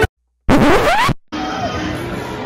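An end-screen music track cuts off abruptly, and after a short silence a loud rising sweep sound effect, a scratch-like whoosh, plays for under a second. A quieter steady noisy background with faint tones follows.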